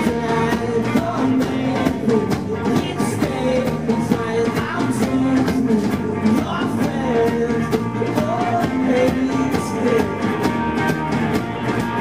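Live rock band playing a song: a steady drum beat with frequent cymbal and snare hits, electric guitars and a lead vocal, loud throughout.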